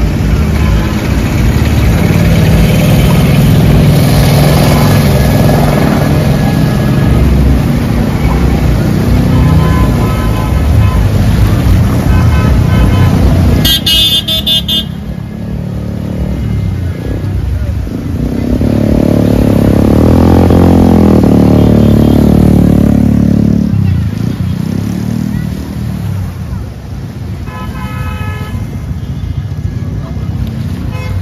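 Motor traffic wading through a flooded street: vehicle engines running continuously, with a car horn sounding briefly about halfway through and again near the end. A vehicle passing close gives a louder, deeper rumble for about five seconds a little after the halfway point.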